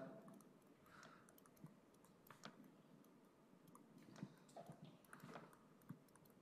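Near silence with faint, irregular clicks of a stylus tapping on a tablet screen while handwriting.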